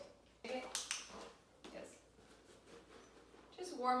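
A few short, sharp clicks and taps about half a second to a second in, then low room sound, with a woman starting to speak near the end.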